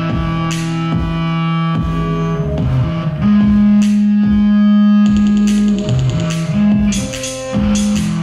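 Solo electric bass played loud through overdrive and a 1970s Ampeg SVT amp: a Yamaha TRB 1006J six-string bass picking out notes with sharp attacks and ringing overtones. About three seconds in it holds one long loud low note for a couple of seconds, then goes back to shorter notes.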